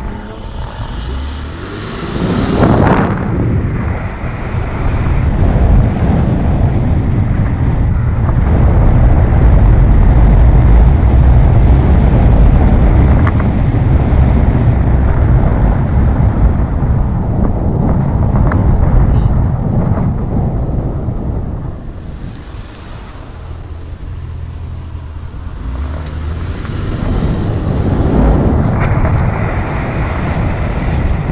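Car driving along a road, with wind rushing and buffeting over the camera's microphone under the road and engine noise. The rush builds over the first ten seconds, eases about two-thirds of the way through, then grows again near the end.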